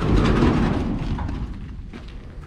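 A metal door of a sheet-metal shed being pulled open, a sudden loud scraping rumble that fades away over about a second and a half.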